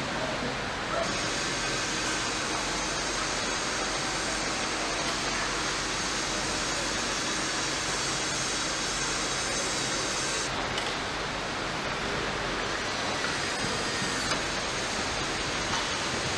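Steady ambient noise of a car assembly hall: an even hiss and hum of machinery and ventilation, with a brighter hiss from about a second in until about ten seconds in.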